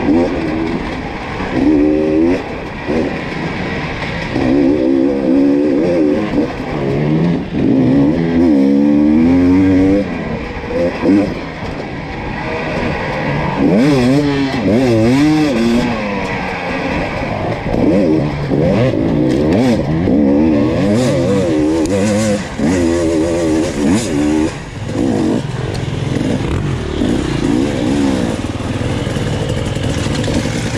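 Enduro dirt bike engine heard up close from on board, revving up and dropping back again and again as it is ridden along a dirt trail.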